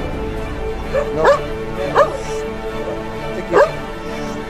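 Boxer dog giving a few short, sharp barks, about a second, two seconds and three and a half seconds in, over steady background music.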